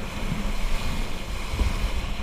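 Wind buffeting the microphone in gusty low rumbles while a kiteboard rides across the water, over a steady rush of water noise.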